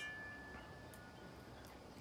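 Quiet background hiss with a faint high ringing tone that fades away over about the first second.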